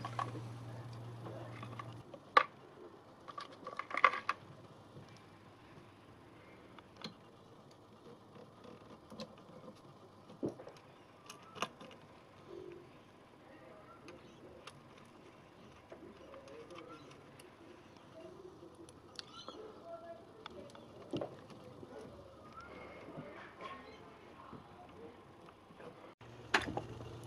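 Scattered small metallic clicks and taps of a screwdriver, screws and sheet-metal parts being handled while a cassette deck's chassis is reassembled, with quiet handling in between. A low hum stops about two seconds in.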